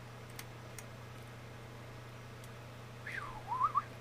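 Quiet room tone over a steady low electrical hum, with a few faint computer mouse clicks in the first second. Near the end comes a brief faint tone that slides down and then steps back up.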